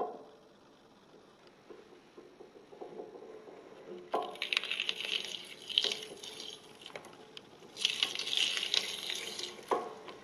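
Water running and splashing in a sink, as from a tap. It comes in two louder spells from about four seconds in, with a knock at the start and another near the end.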